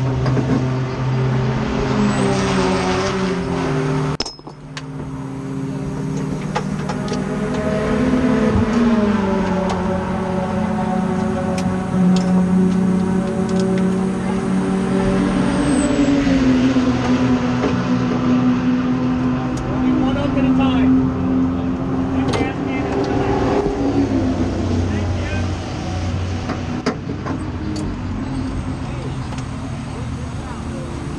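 Race car's engine idling in the pits, its pitch drifting slowly up and down. The sound drops sharply about four seconds in, then builds back up.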